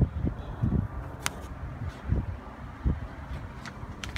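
Low outdoor rumble with handling noise on a hand-held camera microphone, a few soft thumps and a sharp click about a second in.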